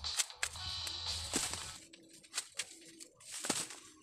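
Dry corn stalks and leaves rustling and crackling as ears of corn are snapped off by hand, with sharp snaps scattered throughout, heard over background music.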